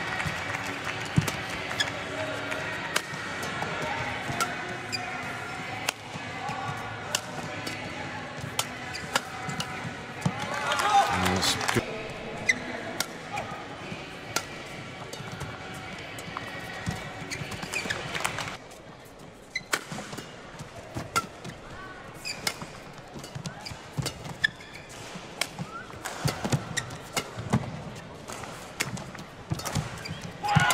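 Badminton rallies: sharp racket strikes on the shuttlecock and players' shoes on the court, over a murmuring arena crowd. The crowd noise swells about ten to twelve seconds in.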